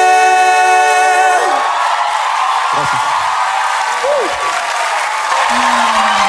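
A held sung note ends about a second and a half in, and a live concert crowd then cheers and applauds, with a few shouted whoops. Near the end a low instrumental line starts the next song.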